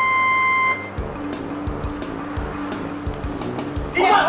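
Electronic start-signal beep, one long high tone lasting under a second, followed from about a second in by background music with a steady beat.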